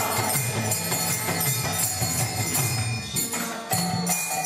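Kirtan music: small hand cymbals (kartals) struck in a steady, even beat over sustained harmonium tones.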